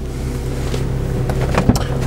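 Fiat 500's petrol engine idling steadily, heard from inside the cabin, with several light clicks and one sharper knock about a second and a half in.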